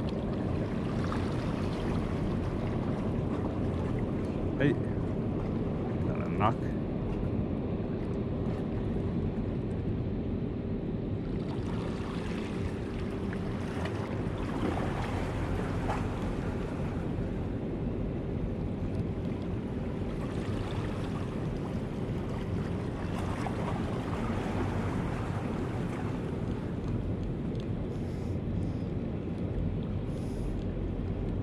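Steady wind noise on the microphone over open harbour water, with a faint steady hum underneath. Two sharp clicks come about four and a half and six and a half seconds in.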